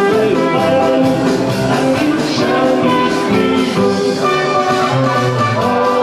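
Live dance band with an electronic keyboard playing an upbeat dance tune, steady and continuous.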